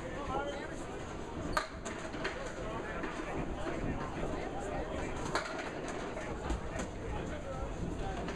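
Candlepin bowling alley ambience: a low murmur of spectators' talk, with a few distant knocks of balls and pins, one about a second and a half in and another about five seconds in.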